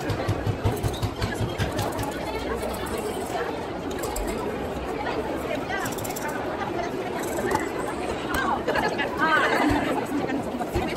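Voices chattering in a busy market stall area, with one voice coming up more clearly in the last couple of seconds.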